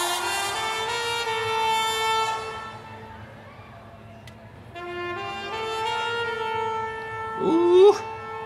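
Live band music led by a trumpet holding long notes in two phrases, each stepping up in pitch, with a quieter stretch in between.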